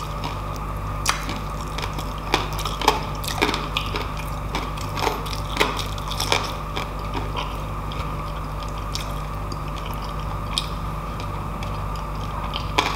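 Close-up eating sounds: roast pork belly is pulled apart by hand and chewed. Short, irregular clicks come thickest in the first half and thin out later, over a steady low hum.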